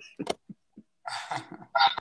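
A man laughing hard in short bursts that trail off, with a breathy gasp about a second in.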